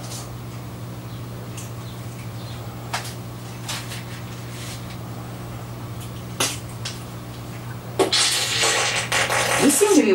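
Raw sausage meat in casing being handled and twisted into links by hand, with a few faint soft clicks over a steady low electrical hum. About two seconds from the end a loud hiss starts and runs on.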